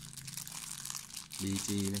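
Clear plastic bag crinkling as hands turn the folding knife sealed inside it, a light irregular crackle.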